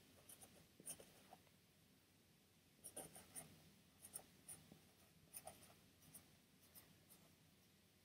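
Faint scratching of a silver marker pen writing on the hardback cover of a bound book, in short separate strokes.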